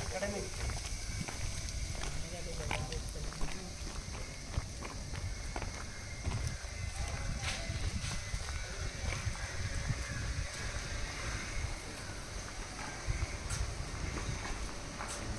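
Outdoor background with a steady low rumble, faint distant voices and scattered footsteps on concrete.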